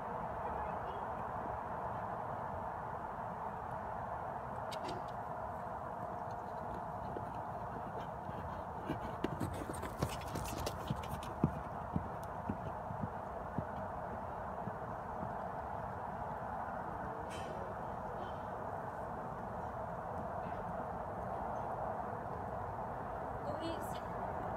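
Horse's hooves on soft arena footing: a short run of irregular dull thuds about nine seconds in, over a steady background hiss.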